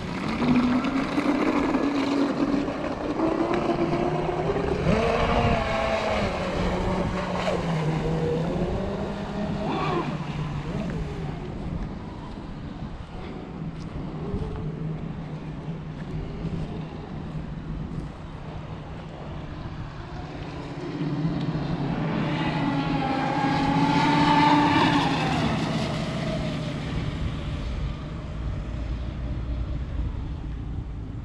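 Electric RC speedboat running on 12S batteries, its motor whine rising and falling in pitch with throttle and passes. The whine fades in the middle and comes back loudest about four-fifths of the way in.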